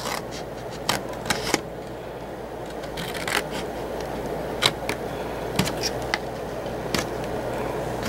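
Small scissors snipping short cuts into heavy brown paper: a handful of sharp, separate snips spread through, over a steady background hum.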